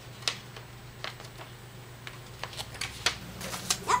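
A paper receipt being unfolded and handled: crisp paper rustles and crackles, sparse at first and denser in the last second and a half.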